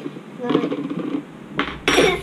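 Light clinks and scrapes of a metal spoon against a glass baby-food jar, with a short louder clatter near the end.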